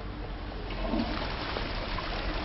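Water running steadily.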